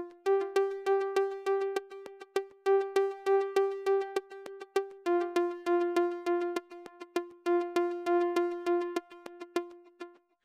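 Logic Pro X Retro Synth pluck patch repeating one short note about four times a second. The pitch steps up slightly near the start and back down about halfway through. The notes' tails lengthen and shorten in a slow cycle, because a Modulator LFO is sweeping the synth's amp decay time over each bar.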